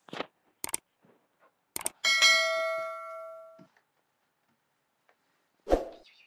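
A small bell struck once about two seconds in, ringing and fading away over about a second and a half, after a few light clicks and taps. A short thump comes near the end.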